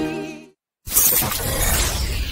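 Sung music fading out, a brief silence, then a sudden loud crash-like sound effect about a second in that rings and dies away slowly, the opening hit of a channel logo sting.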